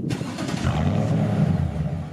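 2008 Toyota Tundra's engine firing up through an aftermarket dual exhaust, heard at the tailpipes: a sudden burst as it catches at the start, then a steady deep exhaust note as it runs.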